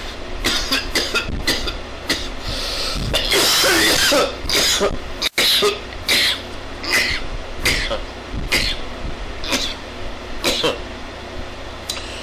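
A man's coughing fit: a string of hard coughs, densest about three to five seconds in, then easing to single coughs roughly once a second.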